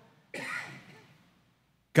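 A man briefly clearing his throat about a third of a second in, one short breathy sound that fades within a second, with near silence around it.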